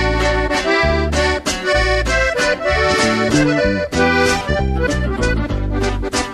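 Instrumental introduction of a norteño-style corrido: an accordion plays the melody over a steady, rhythmic band backing.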